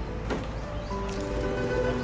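Background music of soft, held notes that change pitch from one to the next, with a faint click about a third of a second in.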